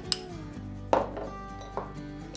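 Background music, with a sharp glass knock about a second in and a lighter one near the end, as diced bell pepper is tipped from a small glass bowl into a glass mixing bowl.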